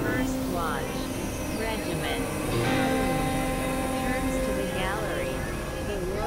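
Experimental electronic drone music: several steady synthesizer tones held under swooping, curving pitch glides, over a noisy hiss.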